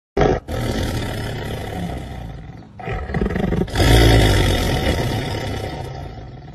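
Black panther growling and roaring in a series of rough, deep calls: a short one at the start, a long one, a brief one around three seconds in, then the loudest and longest.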